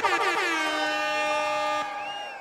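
Electronic sound effect: a dense chord of tones sliding down in pitch, then holding steady, and cutting off shortly before the end.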